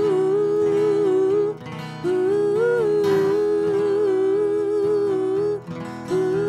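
Live acoustic folk music: wordless vocal harmonies in long held notes over a strummed acoustic guitar. The voices sing two long phrases, breaking off briefly about a second and a half in and again near the end.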